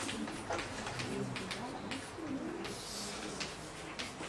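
Scattered sharp taps of writing on a board, over a faint, low murmur in the room.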